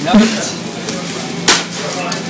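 A single sharp knock about one and a half seconds in, over a steady low hum and background murmur.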